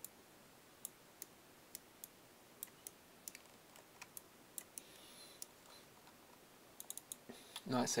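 Irregular sharp clicks of a computer mouse and keyboard, about twenty over several seconds, scattered unevenly against a quiet room hum.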